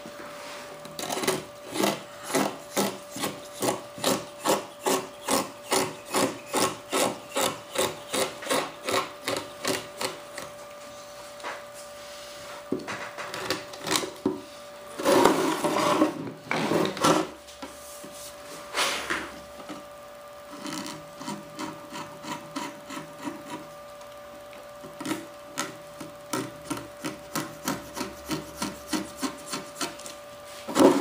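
Hand strokes rubbing over a mold block, about two a second, in a steady run. Midway there is a louder, rougher stretch of scraping, then a few scattered strokes and a quicker run near the end.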